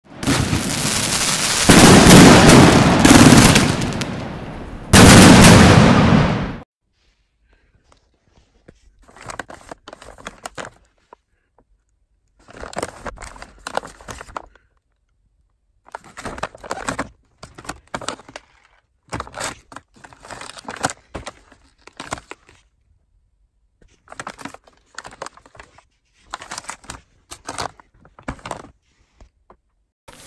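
Fireworks: a loud run of explosive bursts over the first six seconds, then from about nine seconds in repeated short spells of crackling pops, each a second or two long with quiet gaps between.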